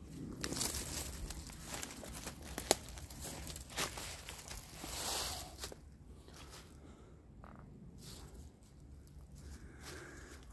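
Footsteps crunching and rustling through dry fallen leaves on a forest floor, busiest in the first half and sparser after, with one sharp click about a quarter of the way in.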